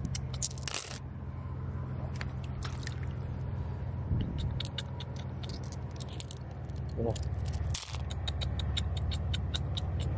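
Flat glass gems clicking and clinking against each other in a hand and being set down on wet sand, many short sharp clicks that come thicker in the second half, over a steady low hum.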